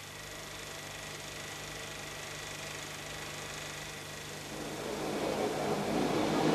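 Steady hiss with a low hum from an old film soundtrack. About four and a half seconds in, a louder, unclear sound swells up toward the end.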